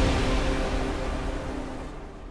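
News-channel intro theme music ending, its last sustained chord dying away steadily.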